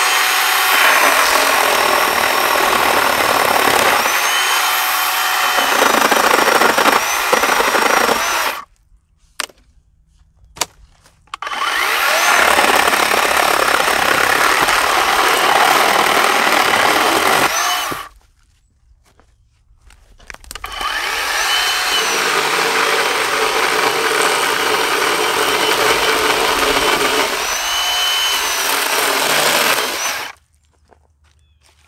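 WORX 40V battery-powered electric chainsaw cutting through a dead tree branch in three long runs, going fully silent between them when the trigger is released: about eight seconds of cutting, a pause of about three seconds, about six more seconds, a short pause, then a last run to the end. The motor's whine glides up as it spins up and down as it stops.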